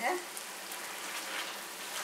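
Chopped tomatoes and onions sizzling steadily in butter in an uncovered frying pan.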